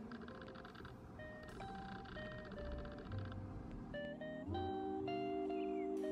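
Soft background music with a slow melody of held notes. About two-thirds of the way through, a fuller, longer held tone comes in and the music gets a little louder.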